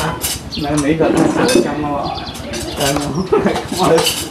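People talking, with light clinks of a metal spoon against ceramic and enamel bowls as food is served.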